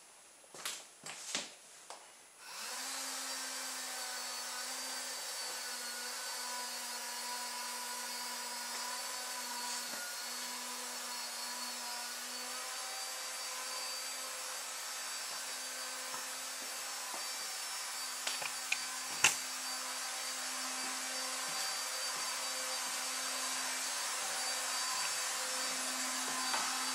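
A few clicks, then about two and a half seconds in a small electric motor starts spinning a USB vacuum cleaner's fan, running with a steady whirring hum and airy hiss. The motor is on its low-power setting.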